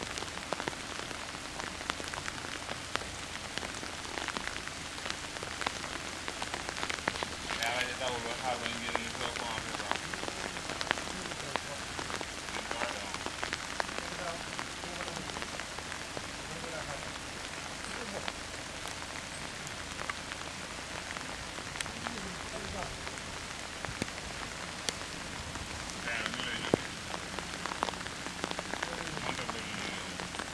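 Steady rain falling, an even hiss with many single drops ticking close to the microphone.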